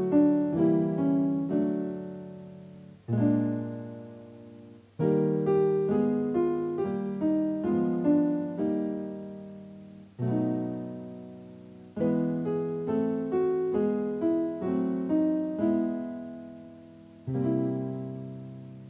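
Piano playing the accompaniment for a vocal warm-up: a quick run of notes stepping down in thirds, ending on a held chord that fades. The pattern repeats three times, about every seven seconds, moving up in key each time for the singer to follow.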